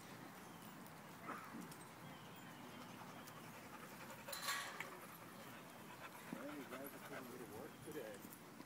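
Faint sounds of two dogs playing, one giving a wavering whine over the last two seconds. There is a short rustle about halfway.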